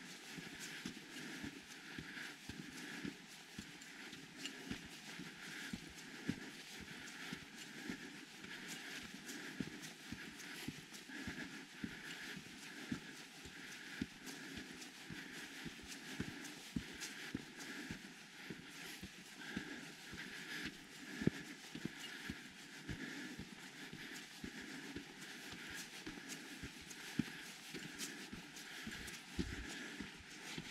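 Footsteps on a dirt hiking trail at a steady walking pace.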